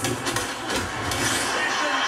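Film-trailer soundtrack of a cricket match: stadium crowd noise mixed with music, with a commentator's voice.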